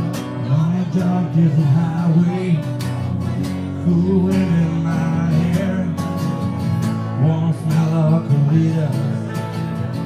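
Live acoustic guitar strumming, with a low male voice singing a gliding melody over it.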